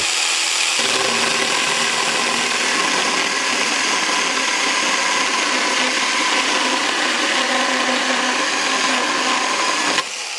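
Yard Force battery handheld mini chainsaw running steadily under load as its chain cuts through a 3x3-inch softwood post.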